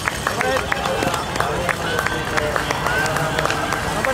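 Spectators calling out and cheering as cyclocross racers go by on a dry dirt climb, over scattered clicks and crunches of the riders' bikes and running feet on the dirt.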